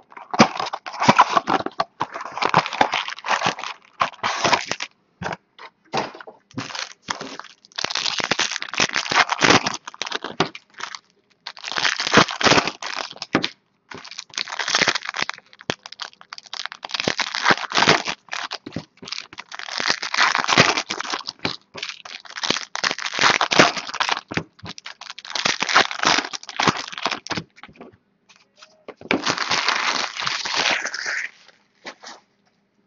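Trading-card pack wrappers being torn open and crinkled while a stack of cards is handled, in bursts of crackling with short pauses.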